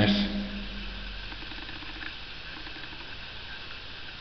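The last word of a man's voice ringing out briefly in a bare, unfurnished room, then steady low room noise with a faint hum.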